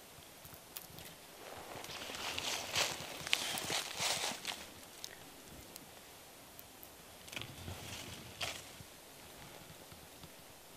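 Dry twigs and leaves rustling and crackling, with a few sharp snaps, as small wild persimmons are picked from the branches. It is loudest about two to four seconds in, with fainter rustles near the end.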